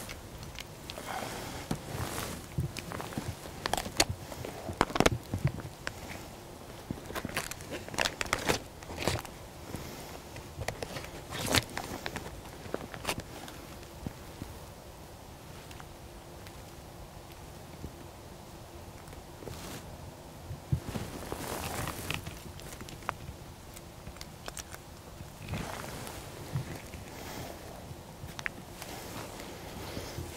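Footsteps and rustling in dry fallen leaves, with irregular crunches and crackles; the steps thin out for a few seconds in the middle.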